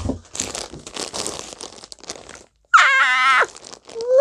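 Clear plastic bags holding yarn cakes crinkling and crackling as they are handled. About three seconds in comes a brief, loud, wavering high-pitched vocal squeal.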